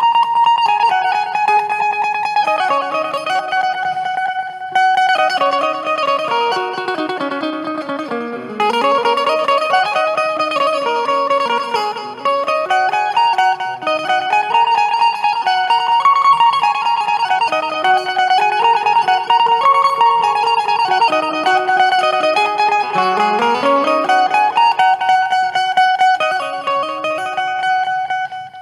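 Indian banjo (bulbul tarang), a keyed electric string instrument, played with rapidly repeated picked notes. It plays a melodic interlude in runs that climb and fall, on the pentatonic scale of Raag Bhupali.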